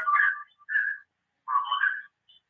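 Garbled sound coming in over a call line from a caller: three short, thin, whistle-like bursts broken by dead-silent dropouts.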